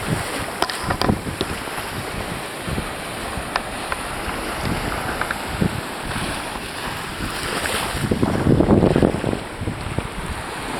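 Wind buffeting the microphone over the wash of surf on a beach: a steady rush of noise that swells louder for a moment near the end.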